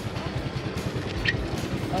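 Small motor scooter engine idling: a steady low, fast putter, with one short high click about a second and a quarter in.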